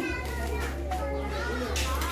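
Children's voices chattering and calling out in the background, over a steady low hum.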